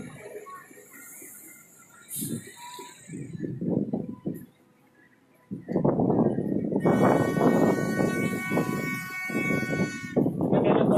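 Outdoor voices of a waiting crowd, and from about halfway loud, dense crowd noise with a sustained, multi-tone horn sounding over it.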